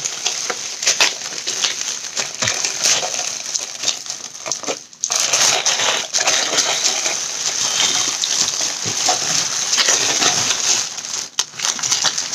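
Packaging crinkling and rustling continuously with many small crackles as a mail package of molds is unpacked by hand, with a brief pause about five seconds in.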